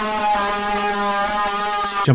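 A man's long, loud scream into a close microphone, held at one steady pitch and cutting off abruptly at the end.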